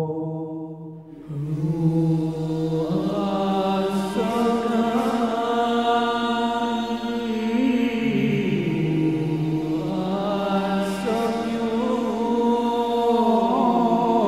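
Male voices singing a devotional vocal piece: a group holds long sustained chords that shift every few seconds, with a lead voice wavering above them, after a brief pause about a second in.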